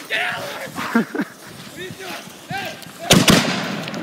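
Firework mortars mounted on a canoe firing: a sharp bang about three seconds in, then a couple more in quick succession. Before the bangs, people's voices calling out.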